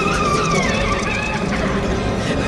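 Subway train running into a station with a low rumble and a high, wavering squeal, which slides down in pitch about halfway through and then fades.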